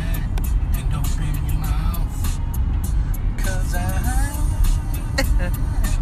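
Road and engine noise inside a moving car's cabin, a steady low rumble. Music and a voice sound over it, the voice briefly about halfway through.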